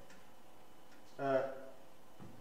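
A man's short wordless voiced sound, a brief falling 'eh', about a second in, with faint clicks of chalk on a blackboard around it.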